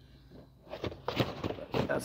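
Rustling and soft knocks of a carpet flap and a rubber cargo floor mat being handled and pressed back into place, starting about two-thirds of a second in after a brief lull.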